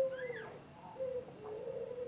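White cockatoo making soft, low murmuring calls that waver slightly, with a short rising-and-falling chirp about a quarter second in.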